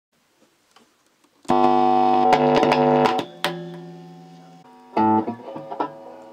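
Electric guitar played through a small practice amp: near silence with a few small clicks, then a loud strummed chord about a second and a half in, held and then cut off, followed by two more chords, the second ringing and fading before the third.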